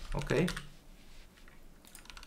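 A few faint, scattered computer keyboard keystrokes, as a file is saved and the cursor is moved in a code editor.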